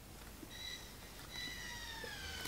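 Faint animal calls: a short high call about half a second in, then a longer drawn-out one that slowly falls in pitch.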